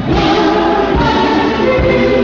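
Soul vocal group singing sustained, wavering harmonies over a live backing band.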